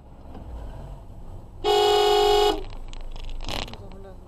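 Car horn sounding once: a loud, steady blast of just under a second, over the low rumble of a car on the move.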